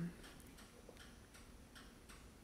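Faint, regular ticking in a quiet room during a pause in speech.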